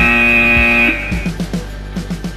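A steady electronic buzzer tone sounds for about a second at the start over background music with a beat, marking the switch from a work interval to a rest interval on a workout timer. After the tone ends, the music's beat carries on.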